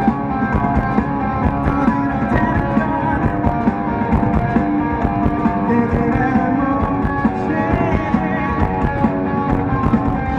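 Live rock band playing, led by electric guitar, with a steady beat.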